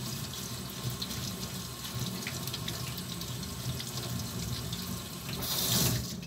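Kitchen tap water running onto a whole pineapple as it is rinsed and rubbed by hand in a stainless steel sink. The steady splashing swells louder and hissier near the end.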